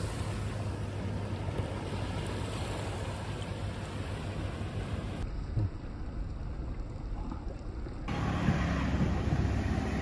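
Steady surf and wind noise on the microphone at the sea's edge, with a low hum underneath. Near the end the sound changes abruptly to a deeper engine rumble.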